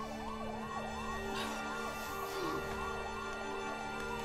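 Emergency vehicle siren in its fast yelp, quick rising-and-falling whoops about three a second, over a steady music drone.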